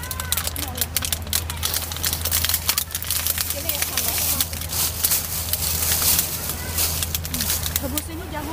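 Thin plastic bags and food wrappers crinkling and rustling as they are handled, a rapid irregular crackle over a steady low hum.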